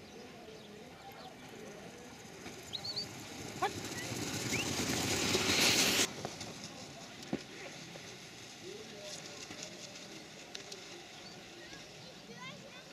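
Outdoor background with faint voices. A rushing hiss grows louder over about three seconds and cuts off suddenly about six seconds in, and a single sharp knock follows a little later.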